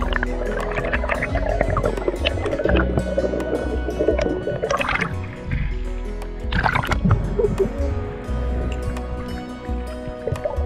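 Background music with held tones over a pulsing low bass. Two short rushes of water noise come about five and seven seconds in.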